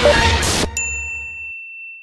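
Intro music ending in a brief noisy swell, then a single high, bright ding that rings out and slowly fades, a logo-reveal sound effect.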